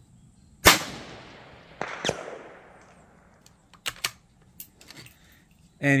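A single .17 HMR rifle shot from a Savage 93R17 bolt-action rifle, a sharp crack followed by a long fading echo. A second, quieter crack comes about a second and a half later, and a few light clicks follow near the end.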